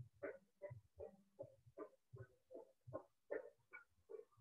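Footfalls of a person jogging in place on a hard floor: faint, even thumps at about two and a half steps a second.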